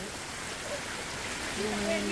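Steady rain falling, an even hiss with no distinct drops or knocks. A faint voice comes in near the end.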